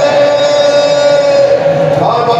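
Loud live folk music accompanying a Mauniya dance, with one long high note held steadily throughout.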